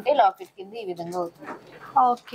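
A person talking in short, broken phrases.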